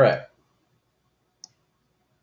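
A short vocal sound at the very start, then a single sharp computer-keyboard keystroke about a second and a half in, with quiet in between and after.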